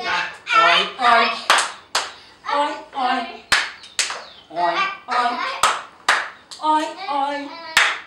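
Voices chanting a children's song in rhythm, broken by hand claps in pairs about half a second apart, the pair coming round about every two seconds.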